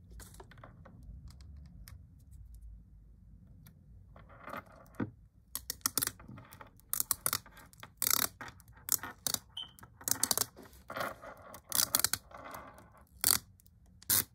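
Handling noise from peeling a dust-absorber sticker off its paper backing and dabbing it on a phone's glass screen: irregular crinkles, rustles and small clicks. It starts about four seconds in after a quiet stretch and runs on in quick succession.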